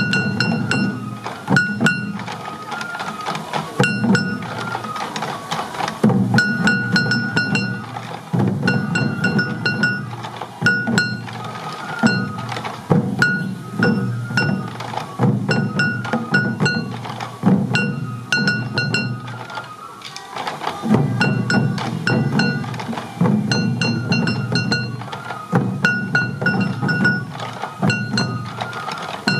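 A large ensemble of Sansa-odori taiko drums worn at the hip and beaten with sticks, played in a steady repeating rhythm. A high bamboo flute carries the melody above the drums.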